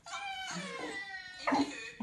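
Dog howling faintly in a whining pitch, with a short louder note about one and a half seconds in.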